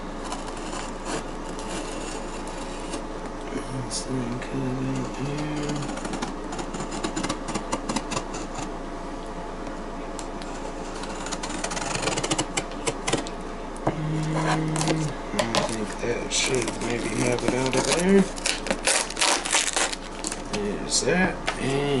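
A knife cutting and scraping through duct tape and cardboard, in bursts of short scratchy strokes that grow busier in the second half.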